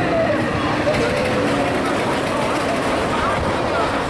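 Spinning amusement ride running: a steady mechanical noise from the machinery and the swinging cars, with indistinct voices of people nearby.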